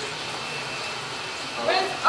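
Steady background hubbub of a busy indoor room, with faint voices underneath; a voice says "okay" near the end.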